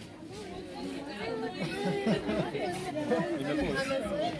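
Background chatter of several people talking at once, getting louder from about a second in.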